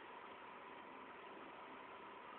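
Near silence: a faint, steady background hiss with a faint constant tone.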